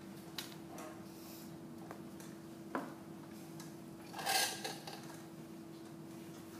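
Faint clicks and a short scratchy scrape about four seconds in, from a hand tool working a clay cup on a studio table, over a steady hum.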